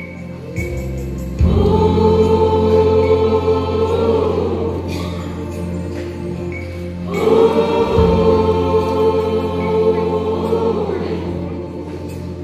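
Combined church choirs singing long held chords in two phrases, the second starting about seven seconds in, over a steady low sustained note.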